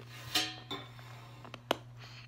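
Hard candy canes clinking and clicking: a short ringing clink about a third of a second in, then two sharp clicks about a second apart.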